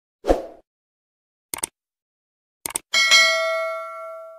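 Sound effects of a subscribe-button animation: a short thump, two quick pairs of clicks, then a bell ding that rings out and slowly fades.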